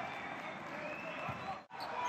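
Crowd noise in a basketball arena during play, a steady hum from the stands with the sounds of the game under it. It drops out suddenly for an instant near the end.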